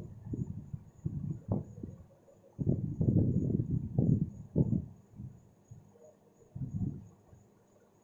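Marker pen writing on a whiteboard: irregular scratchy strokes, densest in the middle, then fewer and fainter. A faint steady high-pitched whine runs underneath.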